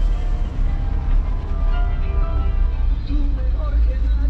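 Ford Fiesta driving slowly on a dirt track, heard from inside the cabin as a steady low rumble, with music playing over it.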